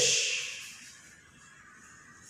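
A drawn-out "shh" hiss from a person's voice, the tail of an exclaimed "ish", fading away over about a second and leaving quiet room tone.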